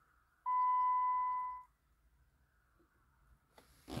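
A single steady electronic beep lasting just over a second, with a faint hiss around it.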